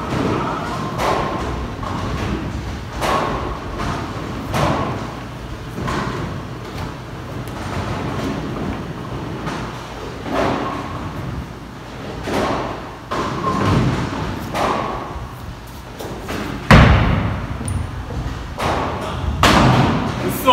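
Bowling alley sounds: balls thudding onto and rolling along the lanes and pins clattering, a string of impacts every second or two, with one loud heavy thud near the end.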